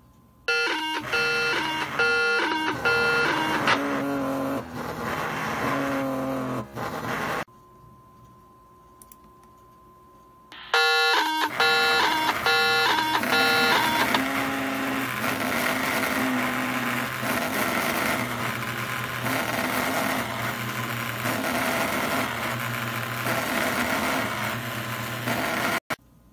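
Pager data transmissions heard over a handheld radio as electronic buzzing tones that step up and down in pitch. They come in two bouts with a short quiet gap. The second bout turns into a dense, rhythmically pulsing noise that cuts off suddenly just before the end.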